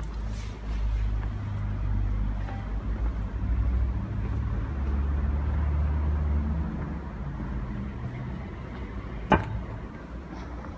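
A car engine running close by, a low rumble that swells for several seconds and then fades as the car goes past. A single sharp click comes near the end.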